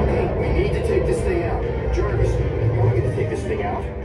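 Simulator-ride soundtrack through the theatre speakers: battle music over a continuous deep rumble, with indistinct voices mixed in.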